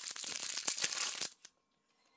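Plastic food packaging crinkling as it is handled, a dense crackle for just over a second that then stops.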